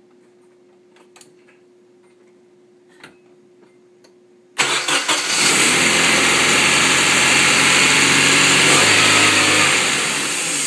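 Nissan 240SX's KA24DE 2.4-litre four-cylinder engine, which has sat unused for over three years, catching and starting right up about four and a half seconds in, then idling steadily. Before it fires there is only a faint steady hum and a few light clicks.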